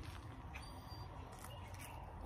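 Faint small clicks and crackles of a ripe pomegranate being broken open by hand, over a quiet, steady low background rumble.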